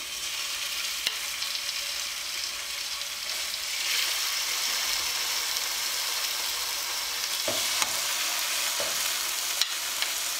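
Seasoned chicken thighs sizzling in hot olive oil in a nonstick skillet as they are laid in one by one; the sizzle grows louder about four seconds in as more pieces go into the pan. A few light clicks are heard over it.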